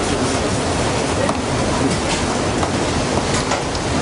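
Lamb mince ragout cooking in a pan on the stove as it is stirred, against a steady rushing noise, with a few faint clinks of the spoon on the pan.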